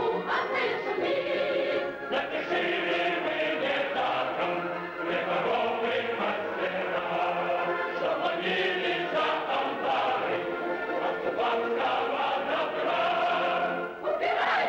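Choral music: a choir singing.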